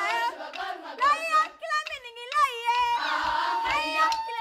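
A girls' choir singing a Marakwet folk song, with high sliding and wavering vocal cries in the middle and one long held note near the end, over a few hand claps.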